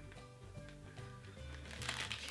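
Background music with low, steady sustained notes, under faint rustling and light clicks of a gummy-candy packet being handled.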